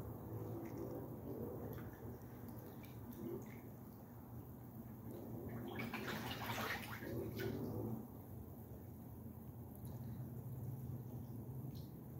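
Water bubbling in a small pond from an aerator, over a steady low hum, with a louder burst of splashing from about five and a half to eight seconds in as hooded mergansers splash at the surface.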